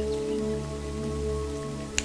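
A soft, held ambient music pad over a steady rain-sound bed, with one sharp click near the end.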